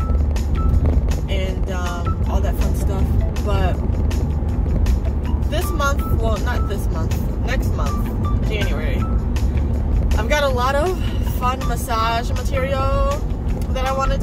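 A woman's voice singing, with music, over the steady low rumble of a car cabin.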